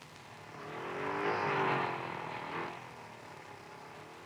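A motor vehicle drives past. Its engine grows louder to a peak about a second and a half in, then fades away.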